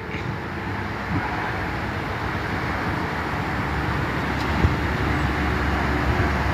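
Steady road traffic and vehicle engine noise, with a low rumble that grows a little stronger near the end. A single short thump sounds about four and a half seconds in.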